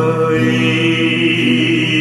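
Song: a male voice holding one long sung note over acoustic guitar accompaniment.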